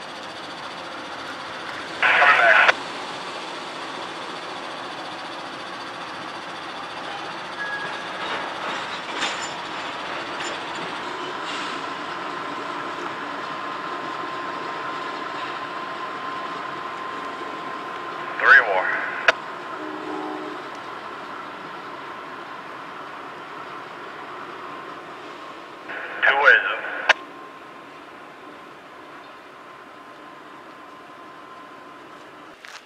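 Diesel locomotive of a work train approaching slowly, its engine a steady low sound. Short bursts of radio scanner chatter come three times.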